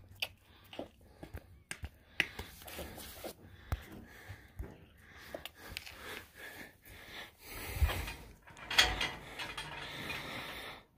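Faint scattered clicks, knocks and rustling as someone moves about in a barn pen, with a couple of louder thumps about eight and nine seconds in.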